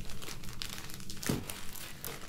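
Clear plastic bag crinkling irregularly as it is handled.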